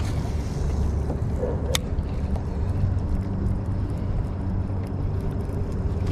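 Wind buffeting the microphone: a steady low rumble, with one sharp click a little under two seconds in.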